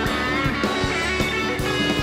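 Live rock band playing an instrumental passage, with electric guitar over a drum kit.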